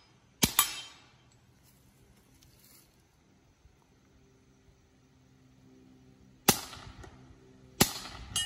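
Suppressed KelTec CP-33 .22 LR pistol firing three sharp shots: one about half a second in, then after a long pause two more about a second apart near the end.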